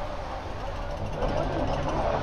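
Busy beach ambience: voices of people talking nearby over a steady low rumble of wind and surf. A voice comes in more clearly about a second in.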